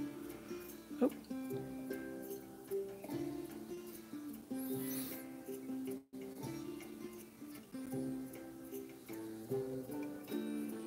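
Light background music of plucked-string notes, with a short break about six seconds in.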